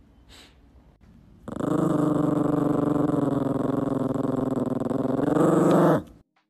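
A Yorkshire terrier growling: one long, rough growl that starts about a second and a half in and rises a little in pitch near the end.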